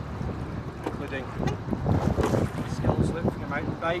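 Wind buffeting the microphone, over water swishing and splashing around a single scull as it is rowed.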